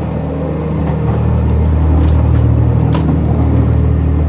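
Steady low running rumble of a moving train, heard from inside as someone walks through the gangway between cars. It grows louder about a second in, and a couple of faint clicks come near the middle.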